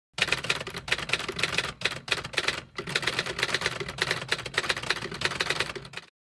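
Typewriter keystroke sound effect: rapid key clicks in runs, broken by brief pauses about once a second, then one longer run that stops near the end.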